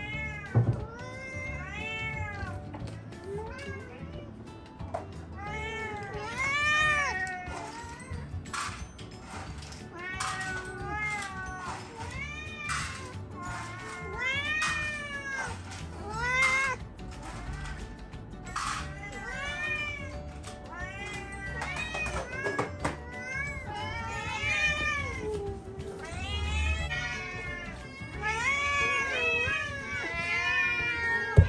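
A group of domestic cats meowing over and over, many calls overlapping, as they beg for their breakfast while it is being prepared.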